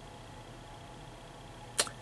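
Faint room tone, then one short, sharp click near the end as a small toy microphone stand is set down on the display surface.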